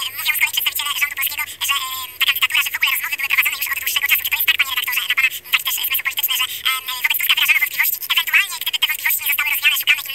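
A person's voice talking continuously with a thin, tinny, telephone-like sound.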